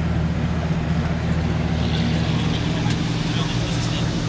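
A steady low machine hum under a constant haze of indistinct background voices.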